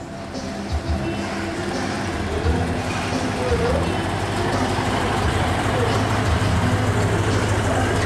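Diesel engine of a Mitsubishi Fuso tractor unit running as the truck pulls slowly past hauling a shipping container: a steady low rumble that grows louder over the first couple of seconds and then holds.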